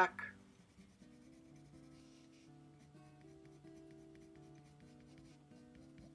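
Light scratching of a black Prismacolor colored pencil stroking over paper as fur is shaded in, under soft background music of sustained notes that change slowly.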